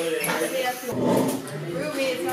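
Indistinct voices talking, with no clear words.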